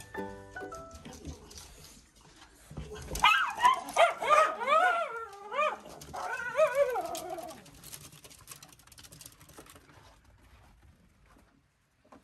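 Several miniature schnauzers barking and yipping in a burst of short, rising-and-falling calls lasting about four seconds, starting about three seconds in just after a low thump. The tail of a music jingle fades out in the first second.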